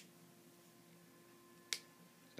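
Near silence with a faint steady room hum, broken by one sharp click about three-quarters of the way through.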